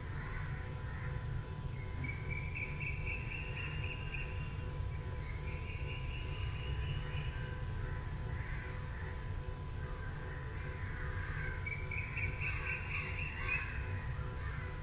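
NEMA 17 stepper motor, driven through an Easy Driver board, spinning steadily at 150 rpm: a constant low hum with a steady whining tone. Three louder, harsher sounds rise over it, at about two, five and twelve seconds in.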